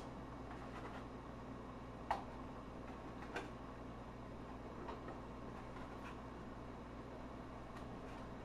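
Light clicks of eggshells being set down on a stainless steel steamer basket, about five faint taps spread over several seconds, the one about two seconds in the loudest, over a faint steady hum.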